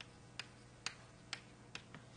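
Chalk tapping and clicking on a blackboard during writing: about four short, sharp clicks roughly half a second apart.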